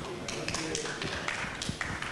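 A hall audience murmuring and moving about, with scattered light taps and knocks at irregular intervals.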